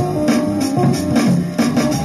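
Hip-hop beat played from an E-mu SP-1200 12-bit sampler: a steady sampled drum pattern with a looped pitched melody and bass under it.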